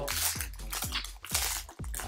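Foil booster-pack wrapper crinkling in the hands as a Pokémon pack is torn open, over background music with a steady beat.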